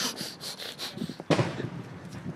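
Firecrackers popping: a quick run of sharp cracks, then a louder bang about a second and a quarter in.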